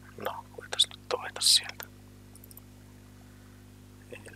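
A man muttering under his breath for about two seconds, with a sharp hissed sound near the end, over a steady low electrical hum.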